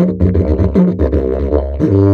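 A large wooden didgeridoo by the maker Paul Osborn being played: a continuous low drone whose overtones shift in rhythmic pulses. Near the end the drone settles into a louder, steadier note.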